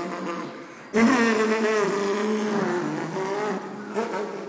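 Buzzing two-stroke Trabant engine sound made for a tiny RC model Trabant. It starts suddenly about a second in and wavers in pitch.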